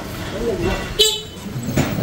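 A short vehicle horn toot about a second in, over the voices and traffic of a busy narrow street.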